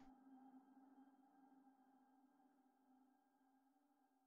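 Near silence, with a faint steady tone dying away over the first two seconds.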